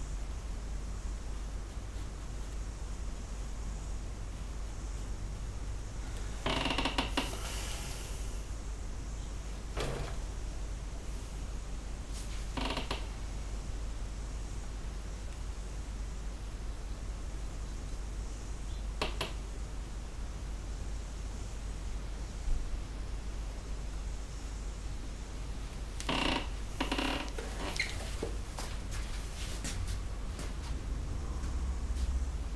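Quiet studio with a steady low hum, broken by a few short creaks and clinks as painting tools are handled at a metal easel trolley and palette: one lasting about a second and a half a quarter of the way in, single ones scattered through the middle, and three close together near the end.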